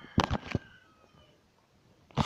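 A few sharp clicks and knocks in quick succession near the start, then near quiet.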